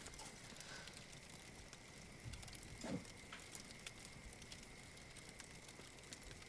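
Faint crackling of a log campfire, with scattered small pops.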